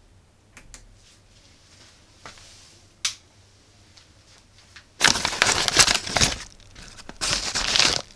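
A single sharp click about three seconds in. Then, from about five seconds in, loud crinkling and rustling of a yellow plastic mailer bag being opened by hand and the clear plastic bag inside it being handled.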